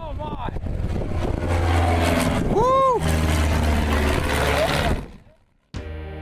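Single-engine light propeller plane flying low past, its engine drone swelling and then holding steady before fading out about five seconds in. Ambient music starts just before the end.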